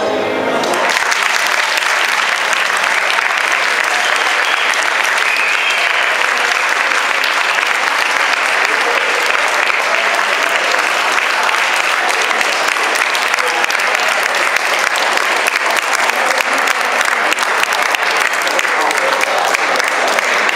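Audience applauding steadily after the dance music stops about half a second in.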